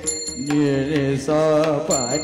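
Devotional kirtan singing: a man's voice holding and bending sustained notes into a microphone, with a steady metallic ringing of small hand cymbals (tal) above it.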